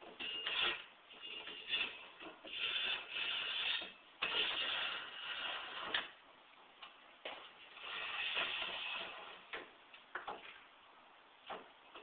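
Intermittent mechanical scraping and rattling in several bursts of a second or two, with a few sharp clicks between them.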